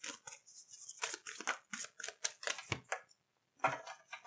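A deck of tarot cards being shuffled by hand: a quick run of crisp card flicks and rustles, then a short pause and a single tap as a card is put down on the table near the end.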